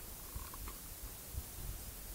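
Quiet background room noise, a low steady rumble with a few faint knocks and a short faint blip about half a second in.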